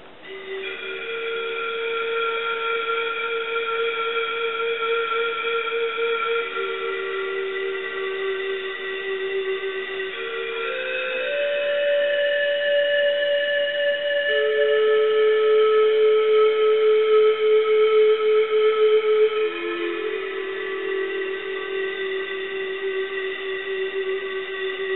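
Nexus² software synthesizer playing a pan flute preset: long held notes, two at a time, that step to new pitches every few seconds. The notes come in about half a second in.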